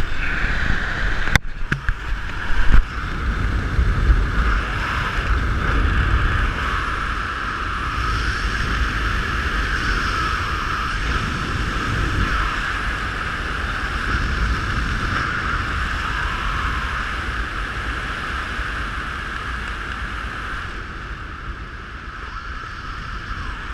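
Wind rushing over a helmet-mounted camera's microphone under an open parachute: a steady rush with low buffeting and a whistling tone. Two sharp knocks come about a second and a half and three seconds in, and the rush eases slightly toward the end.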